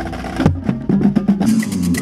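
Drumline playing: tuned marching bass drums struck with felt mallets, with a strong bass drum hit about half a second in, then rapid snare drum taps near the end.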